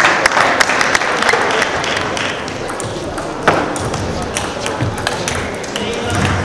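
Celluloid-type table tennis ball clicking sharply off bats and table. A quick run of clicks comes in the first two seconds, a louder knock about three and a half seconds in, and scattered clicks after it as play resumes, over a background of hall chatter.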